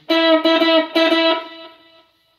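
Electric guitar playing a single note, E on the third string at the ninth fret, picked about three times in the first second and left to ring, fading toward the end.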